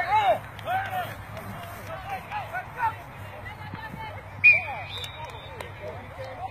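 Spectators on the sideline shouting during a flag football play, loudest at the start and then fading to scattered calls. A single sharp, high-pitched sound cuts in about four and a half seconds in.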